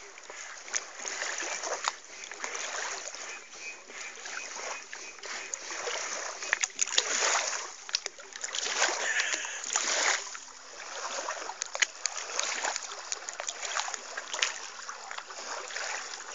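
Water splashing and sloshing in irregular surges as a hand landing net is swept through shallow river water by someone wading, with sharp splash smacks among the wash.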